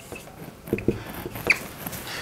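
Marker writing on a whiteboard: a few short, high squeaks and light taps of the tip against the board.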